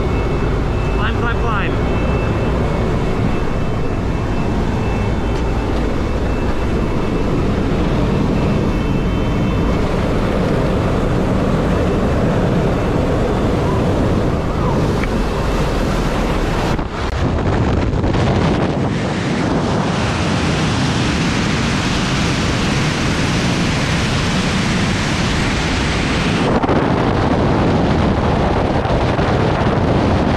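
Steady drone of a jump plane's engine and propeller heard inside the cabin. About halfway through it drops out briefly, then gives way to a loud, steady rush of wind on the helmet camera as the skydivers exit and fall in freefall.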